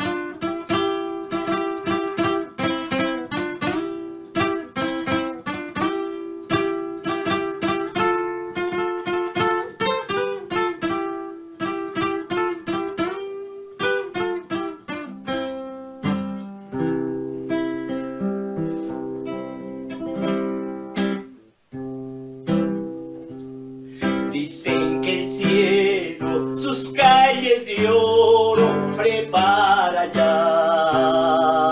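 Classical acoustic guitar played solo: quick picked and strummed notes for the first half, then slower, held chords with a brief break around the twenty-second mark. A man's singing voice comes in over the guitar near the end.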